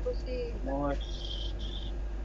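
A high-pitched trill sounds twice, each about half a second long, in the second half, over a steady low electrical hum.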